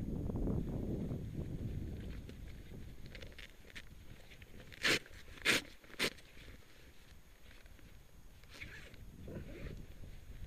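A gaiter being fastened over a hiking boot: clothing rustles and handling noise, then three short, sharp ripping rasps about half a second apart around the middle.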